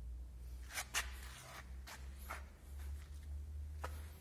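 A few soft scuffs and rustles from someone walking along the truck with a handheld camera, over a low steady hum.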